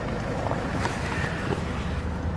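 Steady low rumble with a faint hiss inside a car's cabin, with no distinct knocks or changes in pitch.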